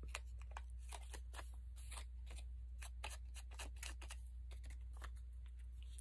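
Small round ink blending tool being dabbed and scuffed against the edges of a paper cutout to ink them. It makes a quick, irregular run of faint taps and scratches, several a second.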